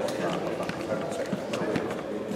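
Indistinct, overlapping chatter of several voices in a sports hall, with scattered sharp clicks of footsteps on the hall floor.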